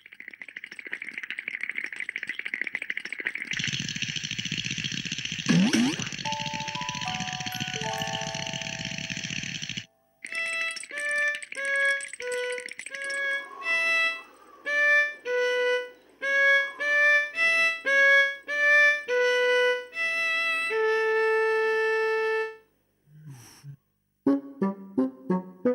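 Cartoon soundtrack: a long whooshing noise for the first ten seconds, with a quick rising glide a few seconds in, then a tune of short, separate notes that runs on until a brief break near the end.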